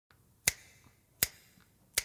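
Three single finger snaps, evenly spaced about three-quarters of a second apart, counting in the slow beat before an a cappella song.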